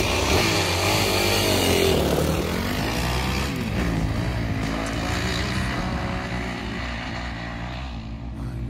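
Dirt bike engine revving as the bike pulls away along a dirt trail, its pitch rising and falling as the rider works the throttle. It grows steadily fainter as the bike rides off.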